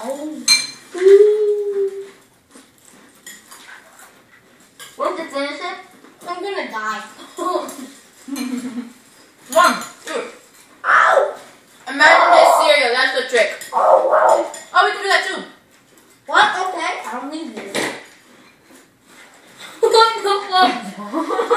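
Metal spoons clinking and scraping in bowls of dry cereal being eaten fast, with muffled voices, hums and laughter through full mouths.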